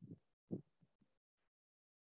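A few faint, low, muffled thuds in quick succession, the loudest about half a second in.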